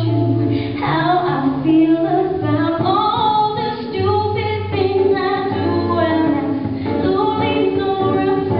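A woman singing a pop song live into a microphone, holding long notes, accompanied by a man playing acoustic guitar.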